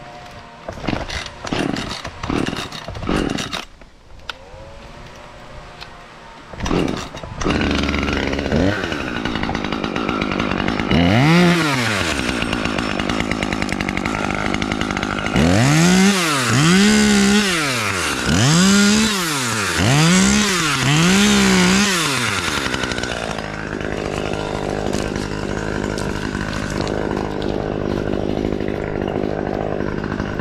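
Husqvarna T540 XP Mark III top-handle two-stroke chainsaw. After a few knocks and clicks, it starts about a quarter of the way in and idles. It is then revved up and released in five short, rhythmic bursts just past the halfway point, and settles back to a steady idle for the last quarter.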